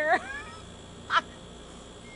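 A person's high-pitched laugh with gliding pitch, fading out about half a second in, then one short laugh burst just after a second.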